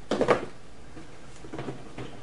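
Light handling noise of boxed miniatures being moved about: a short soft knock about a quarter-second in, then faint rustling and small clicks.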